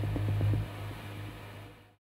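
Belt-driven machinery running with a steady low hum that fades away and ends in silence.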